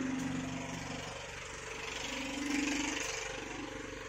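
A motor engine running steadily, a little louder about two and a half seconds in.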